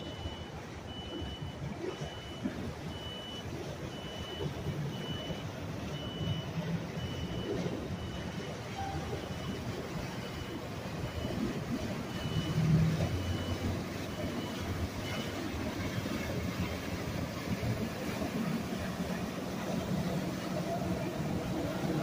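Low, steady engine rumble of a motor yacht cruising past on the river, firming up in the second half as the boat draws close. A high electronic beep repeats a little more than once a second and stops about two-thirds of the way through.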